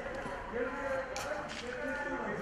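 Faint background voices of people talking, with a brief light click about a second in.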